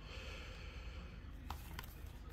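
Quiet handling of a shrink-wrapped trading-card box turned in the hands, with two light clicks of the plastic-wrapped cardboard about a second and a half in.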